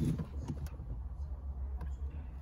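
A few faint clicks over a steady low hum in a car interior.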